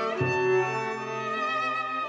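Slow background music on bowed strings: a violin melody with vibrato over long held low notes, a new bass note entering just after the start.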